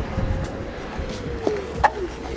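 Onewheel electric board rolling fast over a dirt trail: a steady low rumble of tyre and wind, with a faint motor whine that shifts in pitch and a couple of sharp knocks near the end.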